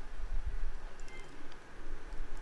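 Low, steady background hum of the recording room, with a faint click about a second in.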